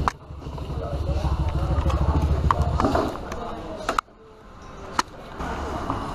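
White plastic table dragged across a tiled floor: a rumbling scrape that stops about three seconds in, with a few sharp knocks of plastic.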